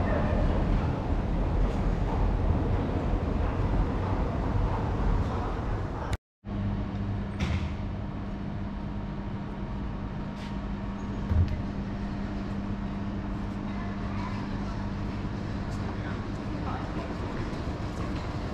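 Train station ambience: a dense low rumble with a murmur of people in the concourse. After a sudden cut about six seconds in, a quieter, steady low hum on the platform beside standing trains, with a few faint clicks and one short knock partway through.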